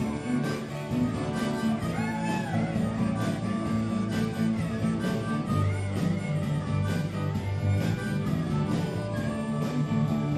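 Live dance band playing: harmonica with electric guitar, bass and drums keeping a steady beat.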